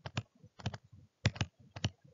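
A pen stylus tapping and clicking on a tablet screen while handwriting words, about ten short, sharp clicks at an uneven pace.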